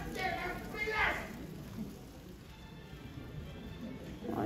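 Short vocal phrases over acoustic guitar. The voices stop about a second and a half in, and a soft, steady guitar tone carries on.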